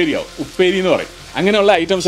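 Omelette frying in a flat pan, a sizzle running under a man's continuous talk.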